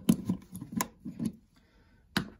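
Plastic action figure with spring-loaded joints being handled: a few sharp clicks and short rattles of its limbs in the first second or so, then it goes quiet.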